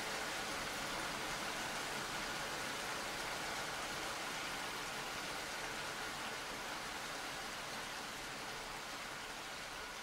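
Steady rain ambience, an even hiss with no music in it, fading out slowly.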